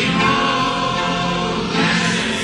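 Choir singing gospel music, with long held notes and no speech.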